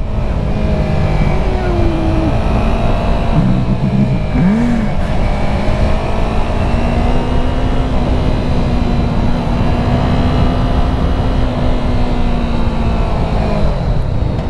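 Yamaha YZF-R3's parallel-twin engine running steadily under way, heard from the rider's seat with wind rush over it. The engine note wavers briefly about four seconds in, then holds steady.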